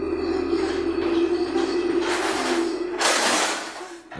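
Steady droning music under two rushing scrapes, about two and three seconds in, the second longer and louder: a wooden dresser drawer sliding open.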